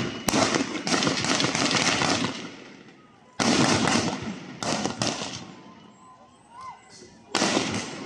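Police weapons firing on a protest crowd, likely tear-gas launchers: sudden sharp bangs, each ringing out and dying away over about a second. A dense run of them fills the first two seconds, and single bangs come a little before the middle, just after it, and near the end.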